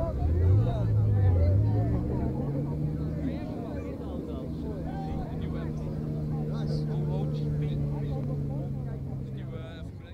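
Two high-performance cars launching side by side from a standing start, their engines revving up over the first couple of seconds and then holding a steady note under hard acceleration. The sound slowly fades toward the end, with voices faintly under it.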